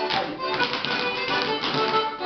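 Traditional dance tune playing while rapper sword dancers' feet step and tap on a wooden floor.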